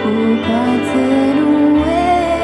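Live band playing a slow, soft passage: held chords over a sustained low bass note, with a melody line rising toward the end and a new bass note coming in near the end, and little percussion.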